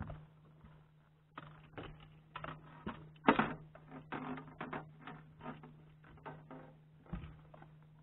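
Fishing tackle being handled in a boat: a run of irregular clicks and knocks, the loudest about three seconds in, over a steady low hum.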